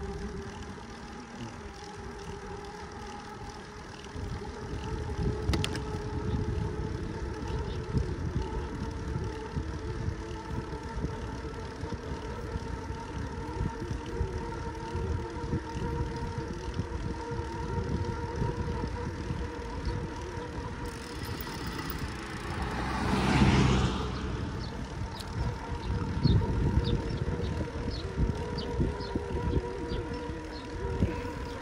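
Riding noise from a road bike rolling along a paved road: wind buffeting the microphone with a steady hum underneath. About twenty-three seconds in, a louder rush builds and fades.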